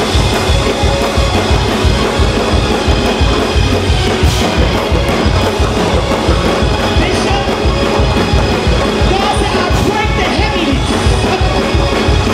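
Church band playing fast, driving praise-break music, with a steady, quick drum and bass beat throughout.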